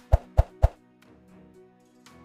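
Three quick pop sound effects about a quarter second apart as an animated like, subscribe and notify button overlay pops onto the screen, over faint background music.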